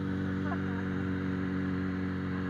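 Suzuki Bandit 650N's inline-four engine running steadily at a constant throttle while riding.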